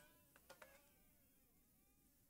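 Near silence, with two faint ticks about half a second in.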